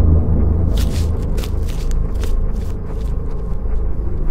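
A steady low rumble with a few faint clicks scattered over it.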